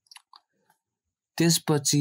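A pause in a read-aloud narration with a few faint mouth clicks, then the reading voice resumes about a second and a half in.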